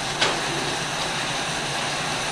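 Steady whirring of spin bikes' flywheels being pedalled together with the room's fans, with one brief click about a quarter-second in.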